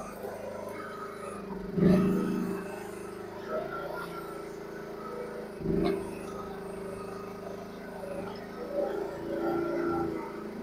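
Mini excavator engine running steadily while the hydraulic arm is worked, with two louder thumps, one about two seconds in and another near six seconds.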